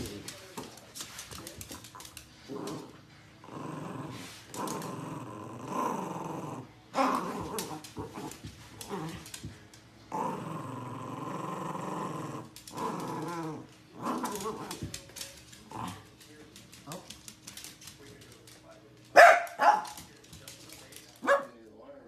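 Small dog growling and snarling in repeated wavering bursts while play-biting at a hand and tugging at a slipper. Near the end there is one loud, short outburst.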